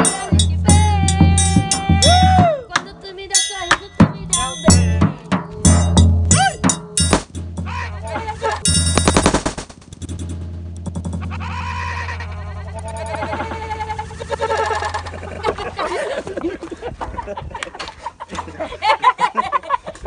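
A zabumba bass drum and a triangle play a forró rhythm, the drum beats low and heavy under rapid metallic triangle strikes. About nine seconds in, the music gives way to a single loud firework bang lasting under a second, followed by voices.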